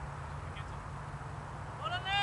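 Wind on the microphone as a steady low rumble. Near the end, a short high-pitched shout starts, rising in pitch.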